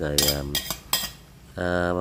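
A few sharp clinks of a kitchen utensil against cookware, about three in the first second.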